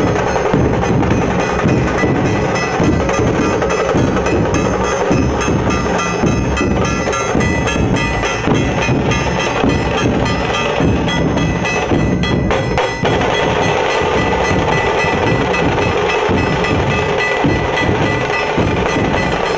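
Dhol-tasha band drumming: large barrel dhols beaten with sticks under sharp, rapid strokes on the small tasha drums, a dense, loud rhythm.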